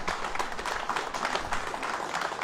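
A crowd applauding: many hands clapping in a steady, dense patter.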